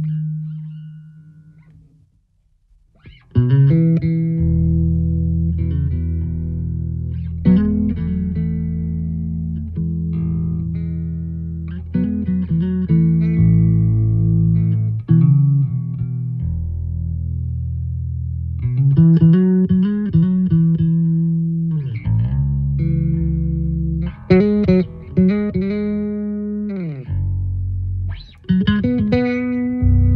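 Yamaha electric bass played through a Blackstar Unity Elite U700H head and U115C cabinet. A held note dies away over the first couple of seconds. Then comes a melodic passage of sustained low notes with higher chordal notes above them, broken by short pauses near the end.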